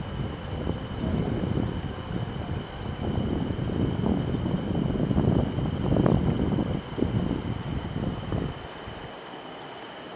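Wind buffeting the microphone in uneven gusts over the steady rush of a river; the buffeting dies down near the end.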